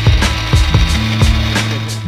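Electric coffee grinder running, a steady grinding whir, over background music with a beat.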